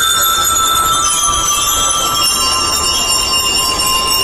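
Bell lyres of a school drum and lyre band ringing out held metallic notes, several tones at once, with the drums mostly dropped back.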